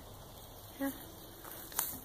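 Mostly quiet outdoor background, with a short click near the end as a hand works the propeller of a Mariner 115 outboard motor.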